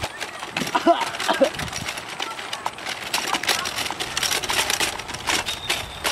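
Manual wheelchair rolling over bumpy grass, its frame and wheels giving irregular clicks, rattles and rustles.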